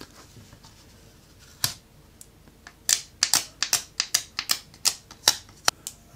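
Dust-removal sticker dabbed repeatedly on a phone's glass screen: a single sharp tap, then in the second half a quick run of sticky taps and clicks, about three or four a second.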